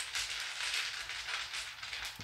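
Soft, irregular rustling with faint crackles.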